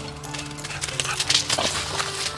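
A dog's paws crunching and rustling through dry fallen leaves as it runs, loudest in the second half, over background music with held notes.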